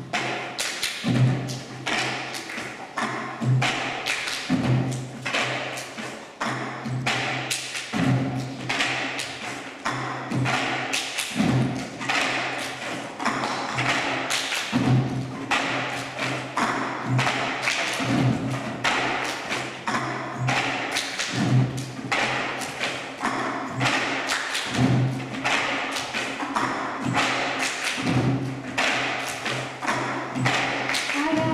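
A group cup-song routine: plastic cups tapped, lifted and slapped down on tables in a repeating rhythm by many hands at once.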